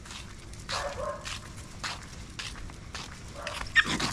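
A dog barks twice: a short call about a second in and a sharper, louder one near the end, over footsteps on pavement.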